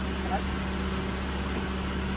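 A vehicle engine idling, heard as a steady low hum under a constant wash of noise.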